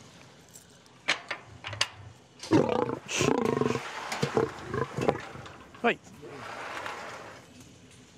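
A lion calls out loudly for a little over a second, about two and a half seconds in, close behind a wire-mesh enclosure gate. It comes after a few sharp knocks at the gate.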